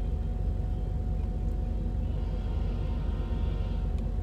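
Steady low rumble of a train passing a level crossing, heard from inside a stopped car, with a faint cluster of high tones coming in about halfway through.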